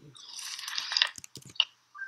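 Computer keyboard being typed on: a string of light, quick key clicks in the second half, after about a second of soft rustling noise.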